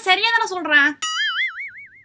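A woman talks briefly, then a cartoon 'boing' sound effect: one wobbling tone that wavers up and down several times a second and fades out.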